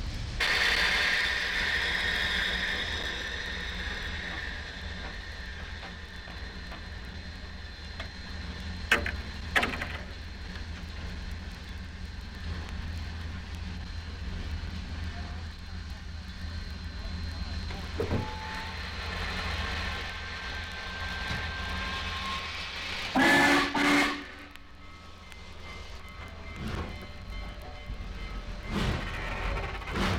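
Archival 78 rpm sound-effects recording of a passenger train standing in a station, heard from inside. A spell of hissing comes at the start, a couple of sharp clanks follow, and two short loud blasts come about three-quarters of the way through, all over a steady low rumble and crackle from the disc.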